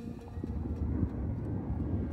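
Low, steady rumble of an electric skateboard ride: wheels on pavement and wind on the microphone, building up about half a second in.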